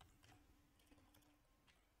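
Near silence with a few faint computer keyboard keystrokes, typing into a search box.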